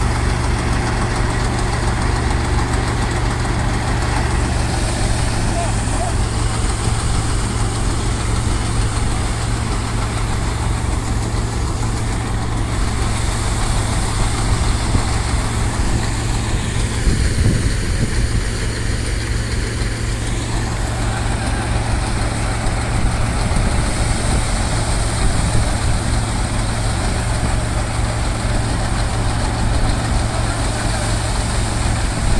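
Tractor-driven stationary threshing machine running steadily while threshing sorghum (jowar) heads: a constant low engine hum with an even rushing noise above it.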